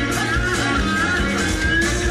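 Live rock-and-roll band playing an uptempo number, with a steady drum beat under a bending lead melody line.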